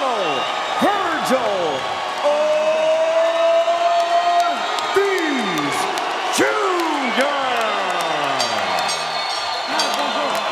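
Boxing ring announcer calling out a fighter's name in long, drawn-out falling tones, holding one note for about two seconds, over an arena crowd cheering.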